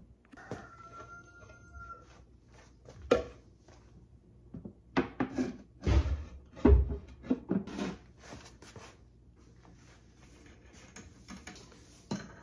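White plastic soap-mold panels being knocked and slid together as the mold is reassembled: scattered hollow knocks and clacks, loudest in a cluster about five to eight seconds in. A brief squeak sounds about half a second in.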